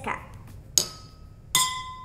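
Two drinking glasses holding different amounts of water struck one after the other with a metal spoon, each giving a clear ringing note that fades; the second note is lower. The pitch is set by the water level: more water, lower note.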